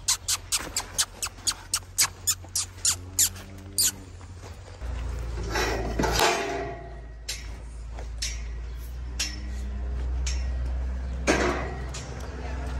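A quick run of sharp clicks or taps, about four a second, for the first four seconds, then short low calls from cattle several times. A steady low rumble and some rustling run beneath.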